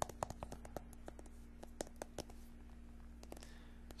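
Hard, irregular taps on an eyeglasses case: quick sharp clicks, several a second, densest in the first second, thinning in the middle and picking up again near the end.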